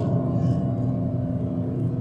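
Road and engine noise inside a car's cabin at highway speed: a steady low rumble with a steady hum running under it.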